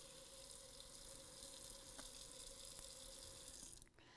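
Kitchen faucet running a thin stream into the sink: a faint, steady hiss that cuts off abruptly just before the end as the tap is shut.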